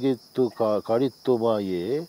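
A man's voice reciting a line of Kannada verse, with a steady high insect chirring behind it.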